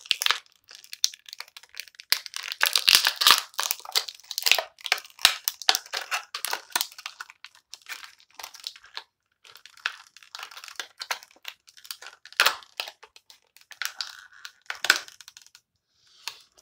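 Clear plastic wrapper being crumpled and pulled open by hand, a dense run of sharp crinkles and crackles with a brief pause about halfway through.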